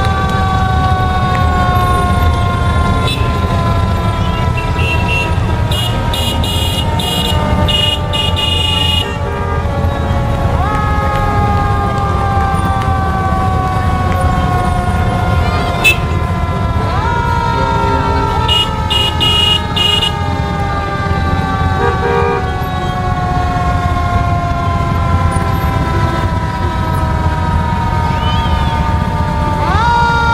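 Fire engine's mechanical siren winding slowly down in pitch, spun back up about a third of the way in, again a little past halfway, and at the end. Underneath it is the low, steady running of a line of touring motorcycles and trikes passing close by.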